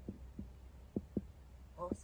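Faint low hum inside a vehicle's cabin, with a few soft, irregular thumps and a brief murmur of voice near the end.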